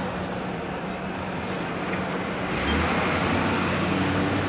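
Car engine and road noise heard from inside a moving car, a steady low hum that grows louder and rougher about two and a half seconds in.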